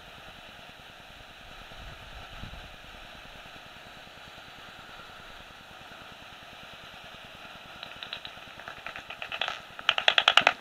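Steady hiss from a Magenta Bat 4 heterodyne bat detector. About eight seconds in, a bat's echolocation calls come through it as a rapid run of clicks that grows louder toward the end: soprano pipistrelles passing.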